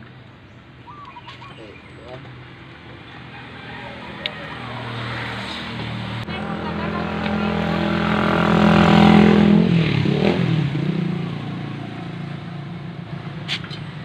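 A passing motor vehicle's engine hum, building over several seconds, loudest a little past the middle, then dropping in pitch and fading as it goes by. A couple of sharp clicks, one near the end.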